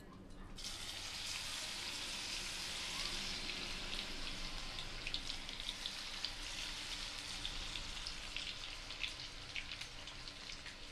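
Marinated, coated soya chunks dropped into hot oil in a kadhai and deep-frying: a steady sizzle with scattered crackling pops that sets in about half a second in as the first pieces hit the oil.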